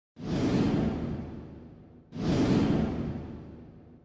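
Two deep cinematic whoosh sound effects for an animated title intro, each starting suddenly and fading away over about two seconds, the second coming about two seconds in.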